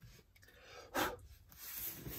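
Soft dabbing and rubbing of a round ink blending tool through a plastic stencil onto paper, with a short hiss about a second in, then a rustling swish as the plastic stencil is lifted off the page.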